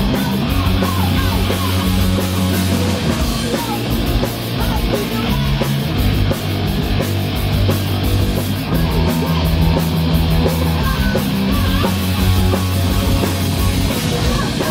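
Live punk band playing loud and fast: distorted electric guitar and bass chords over continuous drumming.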